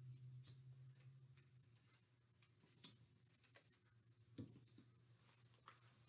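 Near silence: room tone, with a few faint taps as cut-out paper footprints are pressed onto a whiteboard.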